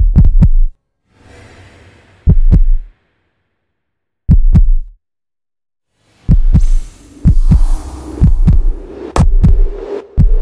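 Film suspense score built on heartbeat-style double thuds, deep and loud, spaced about two seconds apart with silence between them. About six seconds in the thuds come quicker and a sustained tone swells beneath them, building tension before the final ball.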